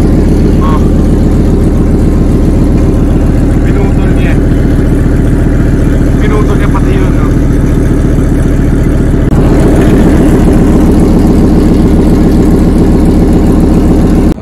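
RV engine idling loudly through an exhaust cut open where the catalytic converter was sawn out and stolen, so the exhaust blows out unmuffled under the vehicle. It gets a little louder about nine seconds in.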